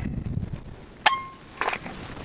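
Ruger PC Carbine's trigger breaking under a trigger pull gauge: one sharp dry-fire click of the hammer falling, with a short metallic ring, about a second in, then a fainter tick. The pull measured about four pounds.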